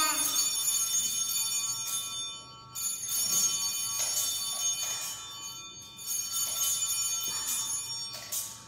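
Sanctus bells (a hand-held cluster of small altar bells) rung three times, about three seconds apart, each peal jingling and ringing on before the next; they mark the elevation of the host or chalice at the consecration of the Mass.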